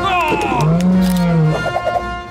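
A cartoon animal-call sound effect: a quick falling cry, then one low, drawn-out call lasting about a second, over background music.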